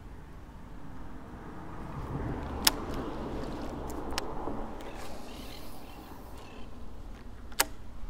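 Baitcasting reel casting a paddle tail swimbait and reeling it back: a whirring that swells and fades over a few seconds, with a sharp click about two and a half seconds in and another near the end.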